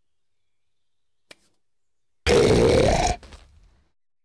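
A cartoon character's voice letting out a loud, rough growl that rises in pitch and lasts just under a second, about two seconds in. It is a pretend scare meant to cure hiccups.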